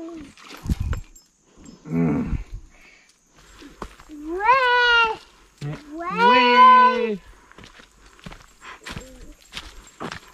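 A human voice giving two long drawn-out cries, about four and six seconds in, each rising in pitch and then held, with a shorter rough vocal sound a couple of seconds earlier.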